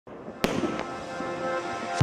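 Fireworks at night: one sharp bang about half a second in, then a softer crack, with music faintly underneath.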